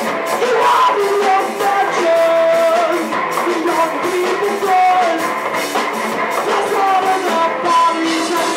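Live rock band playing, with a bowed cello, a drum kit and an electric guitar, with long held notes sliding in pitch.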